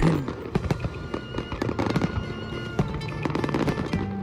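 Fireworks crackling in many sharp pops over background music with held notes.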